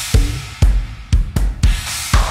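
Drum kit groove: bass drum kicks and snare strokes under ringing cymbals, several strikes a second in a repeating pattern.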